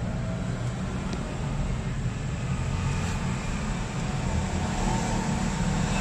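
Steady low-pitched background rumble with no distinct events.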